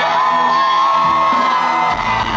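Live rock band playing through a large festival PA, heard from within the crowd, with a long high note held over it and the crowd whooping and cheering. The bass drops out and comes back right at the end.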